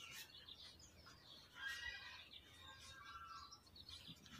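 Faint chirping of small birds, in short scattered phrases, a little louder about two seconds in.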